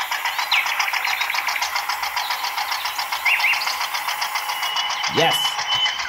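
Small electric motor and gears of a homemade mini toy tractor running steadily, a whirring buzz with a fast, even rattle.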